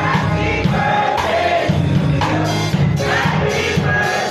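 Congregation singing a birthday song together, backed by a live keyboard and drum kit, with a strong bass line.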